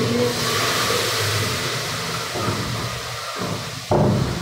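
Steady hiss of a gas burner on high flame with food frying in the pan, and a sharp clank near the end as the metal spatula strikes the pan.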